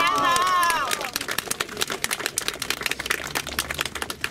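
A small crowd applauding, with a brief burst of shouted cheering at the start.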